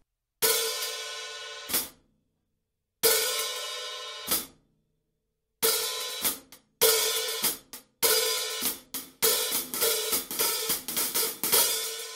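Hi-hat cymbals struck with a drumstick while held open, each ringing wash cut off by the foot pedal closing them with a short chick: the open-and-close sound. Two single open-and-close strokes come first, then a faster run of stick strokes with an opened wash about every second or so.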